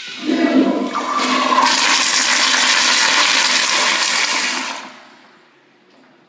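Kohler commercial toilet flushed by its flushometer valve: a loud rush of water starts a fraction of a second in, runs steadily for about four and a half seconds, then dies away near the end.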